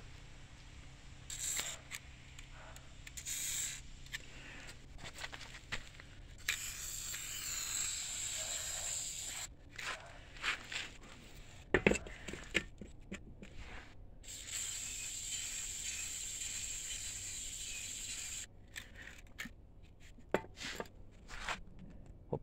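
WD-40 aerosol can spraying through its straw in four hissing bursts: two short ones, then a long one of about three seconds and a longer one of about four seconds. Scattered knocks fall between the bursts, the sharpest about halfway through.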